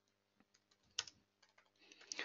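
Faint typing on a computer keyboard: several soft keystrokes, the sharpest about a second in.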